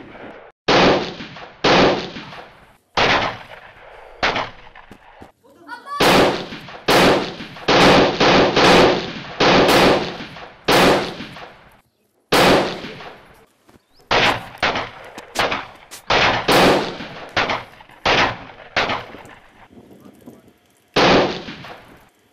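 A long volley of gunshots: about twenty loud single shots at uneven intervals, each trailing off in a short echo, coming thickest in the middle stretch and thinning out near the end.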